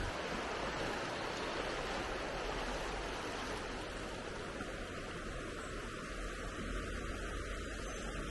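A shallow, rocky river rushing past, a steady even hiss of flowing water.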